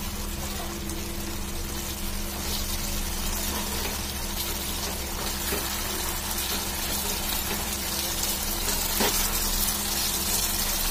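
Chicken in masala gravy frying in a pan with a steady sizzle, stirred with a wooden spatula that scrapes and knocks against the pan a few times. A steady low hum runs underneath.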